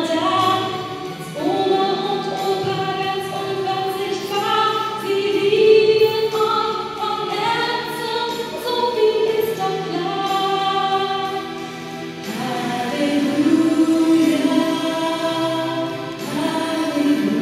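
Choir singing slow, held chords, with a short dip and a new phrase beginning about twelve seconds in.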